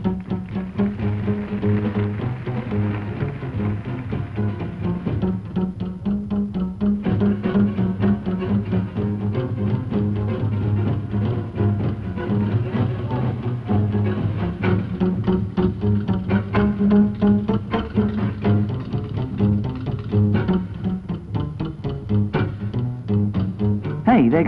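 Traditional jazz band playing.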